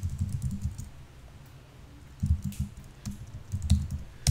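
Typing on a computer keyboard: a quick run of key clicks, a pause of about a second, then more keystrokes.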